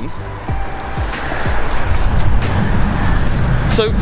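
Motorway traffic noise from below, swelling louder about a second and a half in, with wind rumbling on the microphone.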